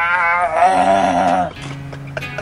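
A man's drawn-out, quivering vocal sound, like a bleat, held for about a second and a half. Music with a guitar comes in near the end.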